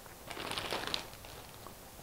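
A thin plastic zipper-top bag rustling and crinkling for under a second as diced zucchini pieces are dropped into it.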